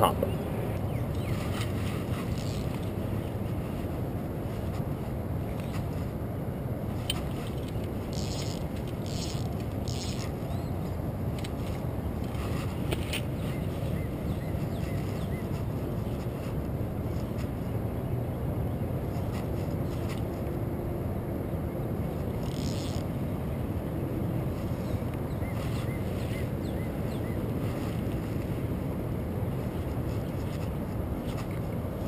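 Steady rushing outdoor background noise, with a few faint short scrapes and rustles about a third of the way in and again a little past the middle.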